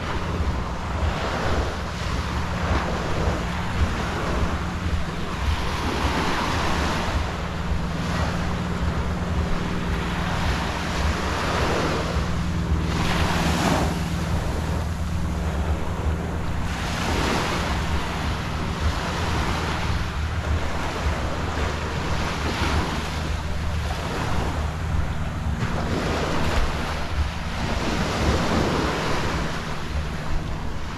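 Small ocean waves breaking and washing up the sand in repeated swells, with wind buffeting the microphone as a low rumble underneath.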